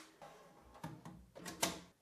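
Thin spring-steel build plate being slid onto a 3D printer's magnetic bed: faint scraping with a few light knocks as it settles into place, the loudest about one and a half seconds in.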